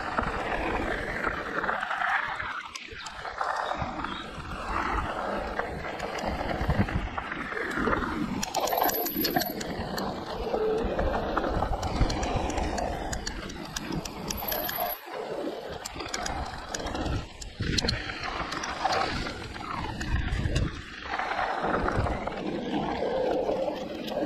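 Wind buffeting the camera microphone on an e-mountain bike riding a dirt forest trail, a rough rumble that swells and dips with speed, with tyres crunching and small rattles and ticks from the bike over the ground.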